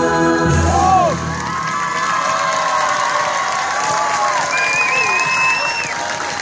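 Folk dance music ends shortly after the start, and the audience breaks into cheering, whoops and applause.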